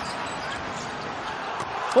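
Steady arena crowd noise in a large indoor basketball hall, with a basketball being dribbled on the hardwood court and a few faint knocks near the end.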